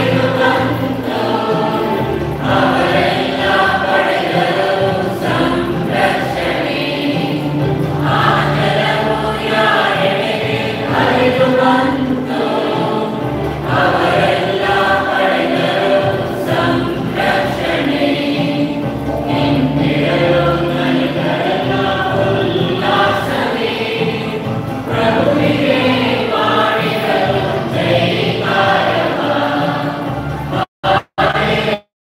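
Church choir singing a hymn with instrumental accompaniment, in continuous phrases.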